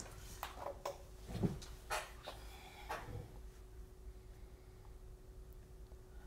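A few light clicks and knocks of objects being handled over the first three seconds, then quiet room tone with a faint steady hum.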